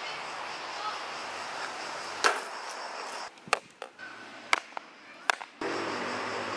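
A block of ice being struck: five sharp hits spread over about three seconds, after a few seconds of steady hiss.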